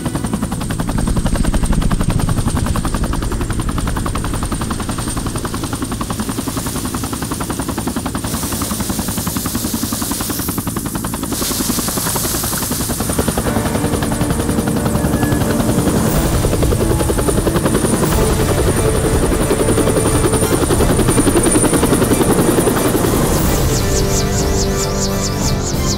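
Helicopter with its main rotor turning at flight speed: a steady, rapid rotor chop under a high, thin turbine whine, rising slightly in loudness about halfway through.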